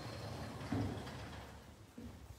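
Sliding horse-stall door rolling along its track as it is pushed open: a low rumble, with a soft bump a little under a second in.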